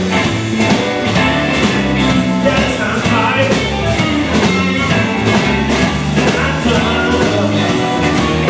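Live blues-rock band playing: Stratocaster-style electric guitars, bass guitar and a drum kit keeping a steady beat, with a male voice singing.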